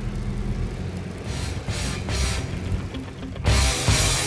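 Low drone of a car creeping along, heard from inside the cabin, with music under it. About three and a half seconds in, louder rock music with guitar comes in.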